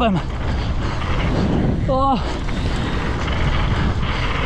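Mountain bike rolling down a packed-dirt trail, recorded on a GoPro action camera riding with the bike: a steady low rumble of wind on the microphone and tyres on the dirt. About halfway through, the rider gives a short voiced grunt.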